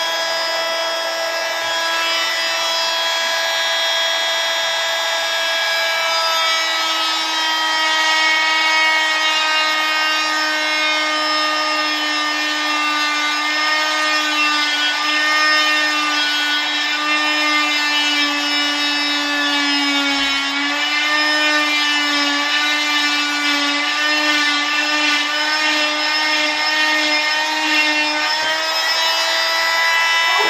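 Oscillating cast saw running with a steady whine as it cuts through a leg cast, its pitch sagging slightly now and then under load; it cuts off right at the end.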